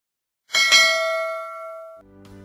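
Notification-bell 'ding' sound effect of a subscribe-button animation: one bright chime about half a second in that rings on and fades.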